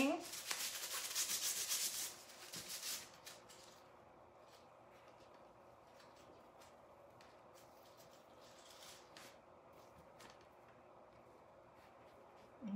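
A wad of tissue paper rubbed in fast circles over metallic leaf on a bumpy hot-glue cross, burnishing the leaf into the glue: a dense scratchy rubbing for the first three seconds or so, then only faint scattered rustles and ticks as the rubbing lightens.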